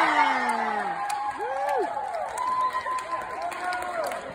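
Several spectators cheering and whooping, their long rising-and-falling calls overlapping, with a few faint claps. The calls thin out toward the end.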